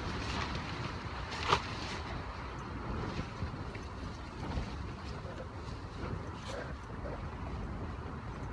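Tent floor and inner-tent fabric rustling as a person shifts and crawls across it on hands and knees, over a steady low rumble, with one sharp click about a second and a half in.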